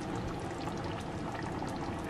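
Steady liquid sound from a pan of simmering butter chicken curry sauce, like pouring or trickling.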